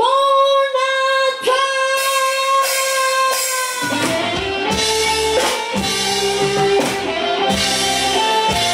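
Live dangdut koplo band: a female singer holds one long high note over a sparse backing, then the full band with bass, drums and guitar comes in about four seconds in.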